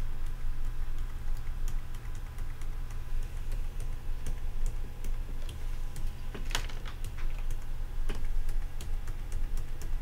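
Computer keyboard keys pressed repeatedly, a few light clicks a second, stepping a video forward frame by frame, with one louder click about six and a half seconds in. A low steady hum runs underneath.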